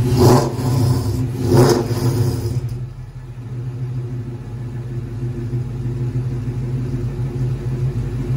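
Freshly built Gen 2 Ford Coyote 5.0 L V8 on Holley EFI idling on its first start, swapped into a 1995 Mustang GT. Two brief louder bursts come in the first two seconds, then it settles into a steady idle.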